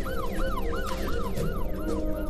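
Siren sound effect in a fast up-and-down yelp, about four cycles a second, over background music.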